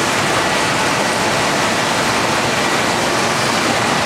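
Steady rush of running water from the aquarium tanks' filtration, even and unbroken, with a faint high steady tone over it.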